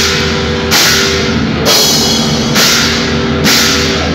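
A rock band playing live: bass guitar, guitar and drum kit, loud and continuous, with a cymbal hit about once a second.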